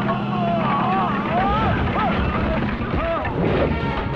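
Several people shouting and yelling over one another in a brawl, with no clear words. Underneath runs a steady low hum.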